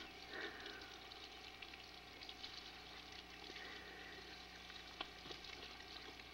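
Faint crackle and hiss with a steady low hum, the noise floor of an old camcorder tape recording. Two faint short high sounds and a single click are heard over it.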